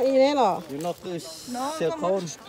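A person talking in the open air, with a short hiss a little after a second in.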